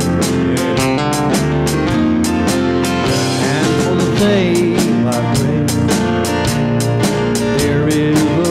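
Live praise band playing a song: drum kit keeping a steady beat under electric guitars and keyboards.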